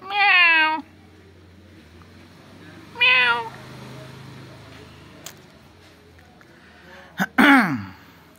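Ginger domestic cat meowing: a long meow that falls slightly in pitch at the start and a shorter meow about three seconds in, then a louder call that falls steeply in pitch near the end.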